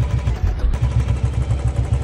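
Royal Enfield Twinspark 350 single-cylinder motorcycle engine idling, with a steady, even low pulse from the exhaust.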